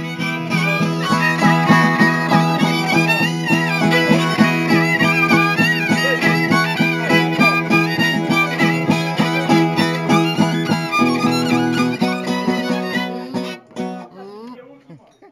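Traditional Oaș dance music: a ceteră (folk fiddle) playing a high melody over the fast, even chordal strumming of a zongora. The accompanying chord shifts about eleven seconds in, and the music breaks off near the end.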